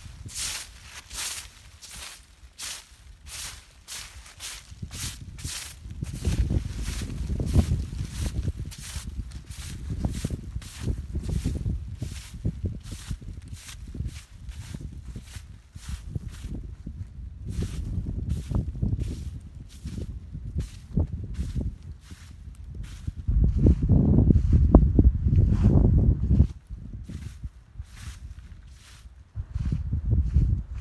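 Broom sweeping dry leaves off black plastic landscape fabric: a rhythmic scratching of about two to three strokes a second. Bursts of low rumble come and go through it.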